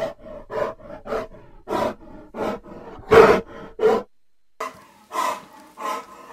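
Loud, exaggerated snoring: a quick string of short snorts, the loudest about three seconds in.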